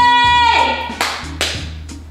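A voice holding one long high sung note that breaks off about half a second in, followed by two sharp hand claps about a second in.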